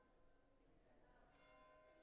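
Very faint ringing bell tones, a fresh strike about one and a half seconds in, its tone ringing on.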